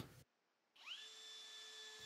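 Cordless drill motor spinning up with a faint whine that rises in pitch a little under a second in, then runs steadily at a constant pitch.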